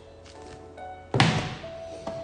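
A single sharp thunk about a second in, a book being put down, over soft background music with long held notes.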